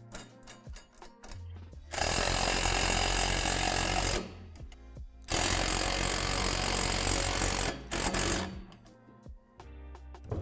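Ridgid cordless driver tightening the nuts on a basketball rim's U-bolt down against the compression springs and retainer plate. It runs in two long bursts of about two seconds each, then one short final burst.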